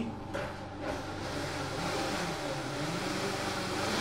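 Countertop blender running, blending coffee with protein powder; it starts up just after the beginning and then runs at a steady pitch and level.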